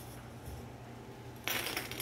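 A handful of small plastic sewing clips tipped out onto a cutting mat about one and a half seconds in: a short, loud rattle of many small clicks.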